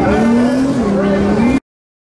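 Car engine accelerating down a drag strip, its pitch rising, dropping once just under a second in, then rising again, under crowd chatter; the sound cuts off suddenly about one and a half seconds in.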